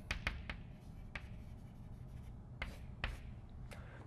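Chalk writing on a blackboard: a quick run of small taps and scratches as letters are formed, then a few separate short chalk strokes spread over the remaining seconds.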